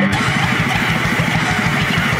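Fastcore punk band playing at full tempo: distorted electric guitars over a very fast, even drum beat, coming in right at the start as a held chord cuts off.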